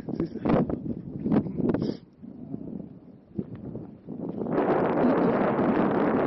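Wind buffeting the camera microphone: uneven gusts in the first two seconds, a lull, then a steadier rushing gust from about four and a half seconds in.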